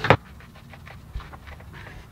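A band clamp being handled: one sharp knock at the start, then quieter rustling and light taps from the strap and its ratchet head.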